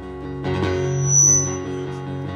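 Live band music led by acoustic guitars, with a fuller, louder entry of the band about half a second in.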